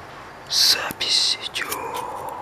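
A person whispering close to the microphone: two short, loud, hissing whispered bursts.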